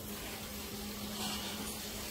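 Faint steady background hum with a low tone running under it, and no hammer strikes or other impacts.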